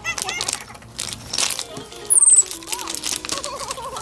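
Plastic packaging crinkling and rustling as a capuchin monkey handles it among stroller toys, with background music. A short, high, falling chirp comes about two seconds in.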